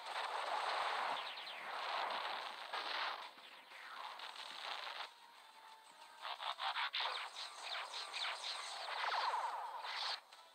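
Cartoon laser-blaster fire and energy explosions: rapid zapping shots in clusters, densest about six to seven seconds in, over a wash of blast noise, with no bass.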